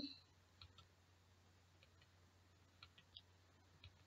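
Near silence: room tone with a low steady hum and a few faint, short clicks, about a second in and again near the end.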